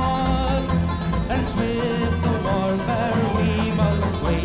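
Irish folk band playing an instrumental break between verses of a rebel ballad: a melody line over plucked string accompaniment and a bass that repeats at a steady beat.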